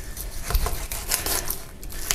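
Knife cutting through the flesh and skin of a large descaled grass carp at the base of the tail, with faint irregular crackles and ticks and a soft thump about half a second in.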